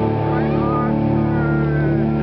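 A live rock band's distorted electric guitars and bass holding a sustained, droning chord with no drumbeat, with a few short sliding high notes over it.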